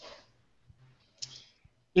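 A pause in speech, mostly near silence, with one short faint click a little over a second in; a man's voice starts right at the end.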